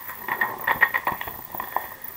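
Paper instruction sheets rustling and crinkling as they are handled, a run of short, irregular crackles.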